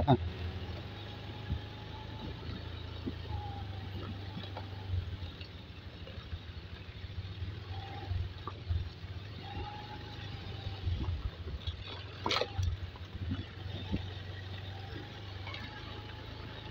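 Footsteps on a gravel dirt track over the steady low drone of a distant engine, with one sharp click about twelve seconds in.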